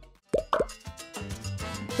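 A single falling 'plop' sound effect about half a second in, followed by light background music coming in after about a second.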